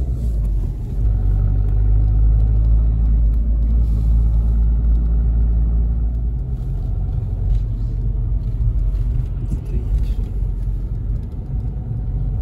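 Car engine and road noise heard from inside the cabin of a moving car: a steady low rumble.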